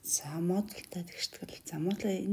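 Only speech: a narrator talking, no other sound.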